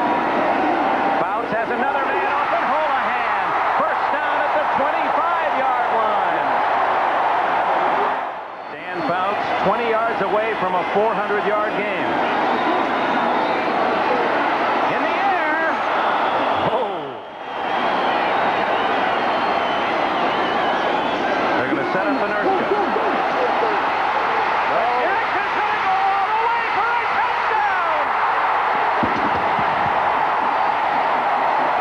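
Stadium crowd cheering and yelling, many voices at once, loud throughout, with two brief dips about a third of the way in and just past halfway.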